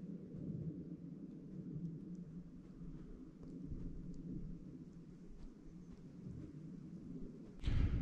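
A faint, steady low rumble with a few faint ticks.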